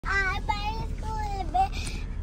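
A young girl singing a few drawn-out notes, with the steady low hum of the car's cabin underneath.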